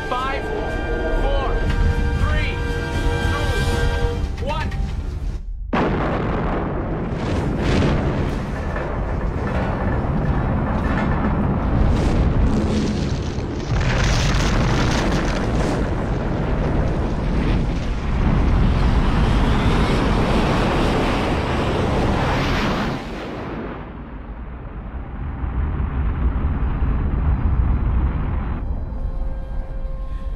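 Film sound of a test missile launching from a submarine, under orchestral score. About five and a half seconds in, the music cuts out abruptly and a loud rush of rocket-motor noise with several booms begins. It lasts about seventeen seconds, then settles into a lower rumble before music returns near the end.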